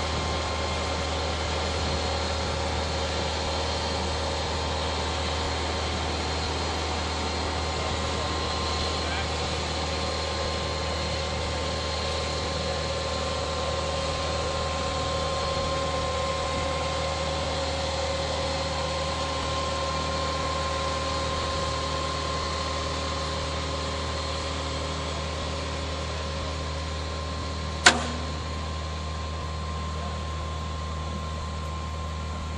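Excavator's diesel engine running steadily, a low hum under a steady whine. There is one sharp knock near the end.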